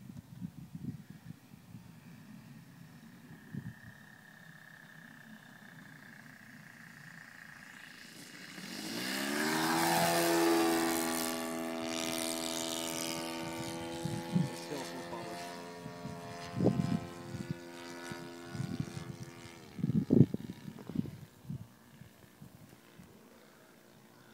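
O.S. 52 four-stroke glow engine of an RC Dragonlady model plane, faint at first, then growing loud as the plane makes a low pass about nine to ten seconds in, its pitch dropping as it goes by. It keeps a steady drone as the plane flies off and fades, with a few short thumps near the end.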